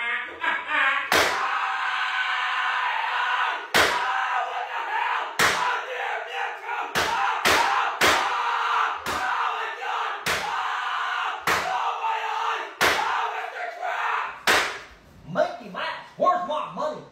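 A voice screaming and yelling drawn-out "ah" cries, cut by about eleven sharp slams spaced one to two seconds apart. The yelling dies away near the end.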